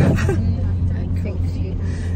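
Steady low rumble of a car heard from inside its cabin, with a short noisy burst right at the start and a few faint spoken words.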